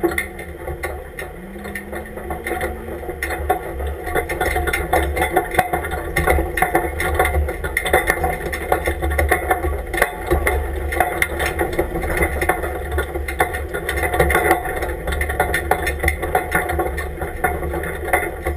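Off-road truck driving across a sandy gravel wash: a low engine rumble with a constant rattle of the body and mounted gear and the crunch of tyres on gravel, growing louder over the first few seconds.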